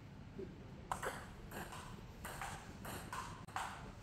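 Table tennis rally: the celluloid-type ball clicking as it bounces on the Donic table and is struck by the rubber paddles. A quick, irregular series of sharp light clicks begins about a second in.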